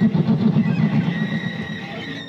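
A live band's amplified instruments holding a loud, low rumbling drone, with a thin steady high tone above it, easing off slightly toward the end.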